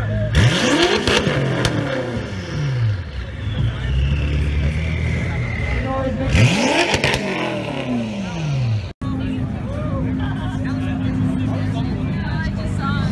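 BMW M6's twin-turbo V8 revved twice from idle, about six seconds apart, each rev climbing sharply and falling away over a couple of seconds. After a sudden cut near the end, another engine idles steadily.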